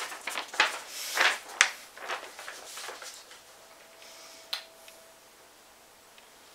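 A paper instruction sheet rustling as it is handled, with a few sharp taps in the first three seconds. It then goes quieter, with one small click.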